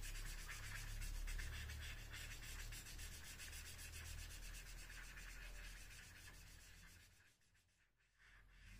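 Pink felt-tip marker rubbing back and forth on paper as a drawing is coloured in. The sound is faint and steady and dies away about seven seconds in.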